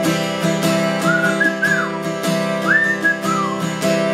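Acoustic guitar strummed steadily, with a man whistling a melody over it from about a second in, in short phrases that rise and fall.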